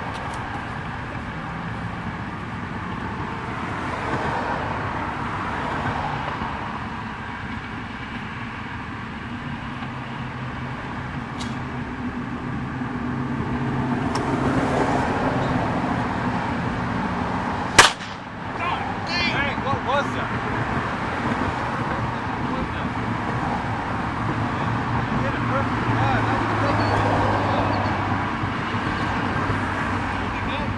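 A single sharp, loud bang as a driver strikes an exploding trick golf ball on the tee, the ball going off like a cannon shot.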